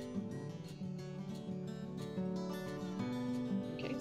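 Background music: a strummed acoustic guitar playing steadily.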